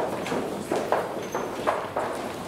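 Footsteps of choir singers' hard-soled shoes and heels on a wooden stage and risers, irregular sharp clicks several times a second.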